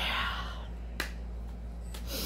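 A short breathy hiss, like a person's exhale, then one sharp click about a second in.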